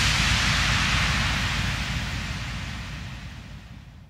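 Electronic white-noise swell from a dance-pop track, fading steadily to silence by the end, with a low fluttering rumble underneath.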